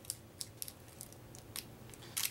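Faint, scattered crinkles and crackles of a paper trading card pack wrapper being pried open by hand at its folded end.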